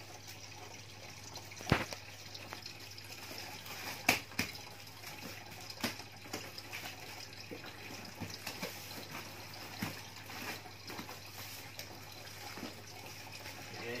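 Plastic DVD cases being handled and sorted out of a cardboard box: scattered small clicks and clacks of the cases knocking together, with two sharper clacks about 2 and 4 seconds in.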